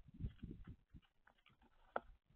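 Eurasian collared doves pecking at seed and shuffling on a plastic feeder tray close to the microphone. A faint, irregular run of low knocks and scuffs comes mostly in the first second, with a sharp click near the end.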